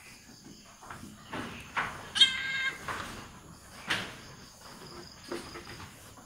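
A goat bleats once, a high call lasting about half a second, about two seconds in, during a difficult kidding (dystocia) being helped along by hand. A few short scuffing handling noises come before and after it.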